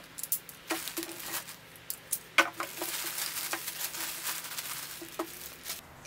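Clear plastic poly bag crinkling and rustling as it is opened and a folded T-shirt is slid out. Scattered sharp crackles at first, then a denser run of crinkling from about halfway that stops just before the end.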